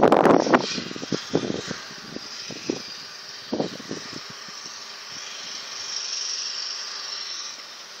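Distant road vehicles heard as a steady hiss that swells gently past the middle, under loud wind buffeting on the microphone at the very start and a few lighter wind bumps after it.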